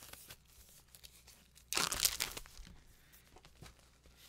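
Plastic shrink wrap being torn open on a vinyl LP, with light crinkling and one loud tear of under a second about two seconds in.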